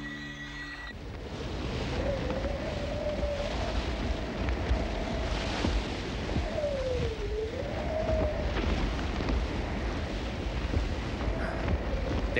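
Cartoon wind sound effect: a low rushing noise with a howl that wavers, dipping down and back up in pitch around the middle. Soft music ends about a second in.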